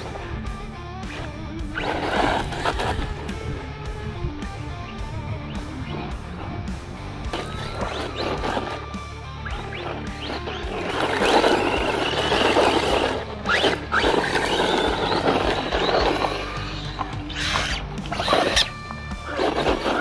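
Background music over a small brushless 1/14-scale RC truck driving on gravel. Its motor whines and tyres crunch in several bursts as it accelerates, loudest in the middle of the stretch.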